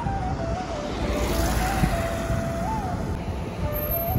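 Road traffic noise with a steady low rumble as a car drives past, under background music playing a simple single-line melody.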